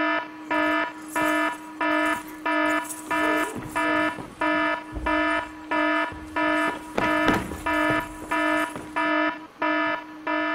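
Electronic alarm beeping over and over at about one and a half beeps a second, each beep a short, even, buzzy tone.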